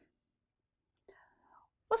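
A pause in a woman's spoken narration: near silence, a faint breath about a second in, then her speech resumes near the end.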